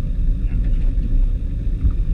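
Low, steady rumble of wind buffeting the camera's microphone on an open boat at sea.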